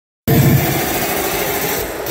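Loud hard-dance music from a festival sound system, recorded on a phone: a noisy, distorted passage with a steady held tone. It cuts in a moment after the start, with heavy bass at first.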